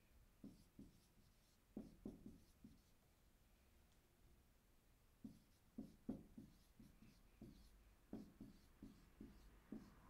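Dry-erase marker writing on a whiteboard: faint short strokes, with a pause of about two seconds in the middle before a denser run of strokes.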